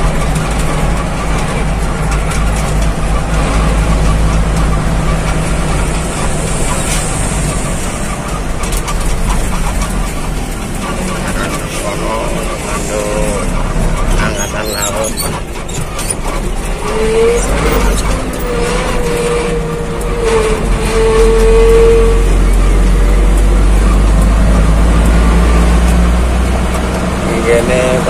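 Truck engine running and road noise heard from inside the cab while driving, a steady low drone throughout.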